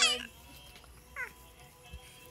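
Baby squealing: a high, wavering squeal that cuts off just after the start, then a short falling squeak a little past a second in.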